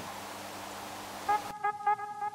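A steady low hiss with a faint hum, then background music of bright, repeated plucked-sounding notes starting about a second in, as the hiss cuts out.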